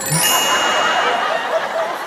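A bright, chime-like ding sound effect that starts suddenly and rings out, its high tones fading over about a second and a half above a hissing shimmer.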